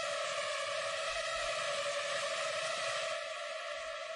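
Early hardcore track in a breakdown: a steady held synth chord over a wash of noise, with no kick drum.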